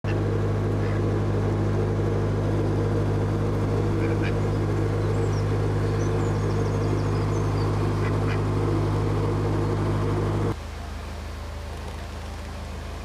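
Narrowboat's diesel engine running at steady revs, a constant low drone. A few short quacks from a white duck sound over it. Near the end the drone drops suddenly to a quieter hum.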